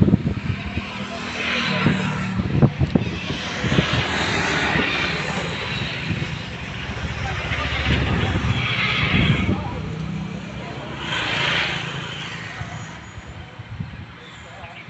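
Electric arc welding on a steel frame, a crackling hiss in several short runs of about a second each, with a few knocks near the start.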